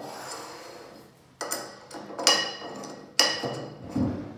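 A hex key and a metal pipe coupling clinking together as the key is fitted into the coupling's set screw: a soft scrape, then three sharp metallic clinks with a short ringing, about a second apart.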